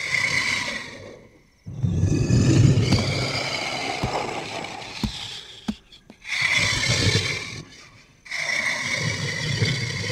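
Horror-film creature sound effects: raspy, rumbling growl-like bursts, four of them, parted by short silences.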